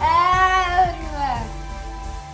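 One long, high, drawn-out vocal call that rises and then falls in pitch over about a second and a half, at the start, over steady background music.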